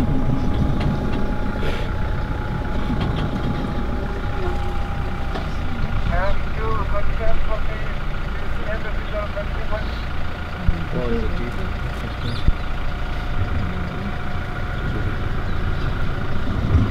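Game-drive vehicle's engine idling steadily. A thin steady tone above it stops about five seconds in.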